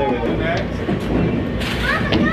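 Bowling alley din: indistinct voices over a steady low rumble of balls rolling down the lanes, with a short noisy clatter near the end.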